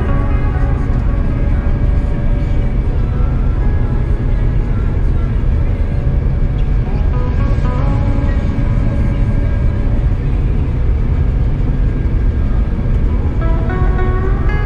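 Music with a moving melody over the steady low rumble of a Claas Lexion 8800TT combine harvester working in the crop, heard from inside its cab.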